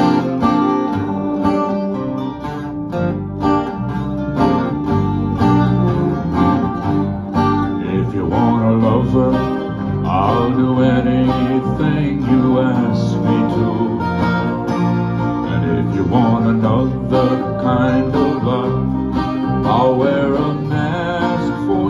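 Small band playing an instrumental intro: acoustic guitars strumming with an electric guitar, and a harmonica playing the melody with wavering notes that stand out from about eight seconds in.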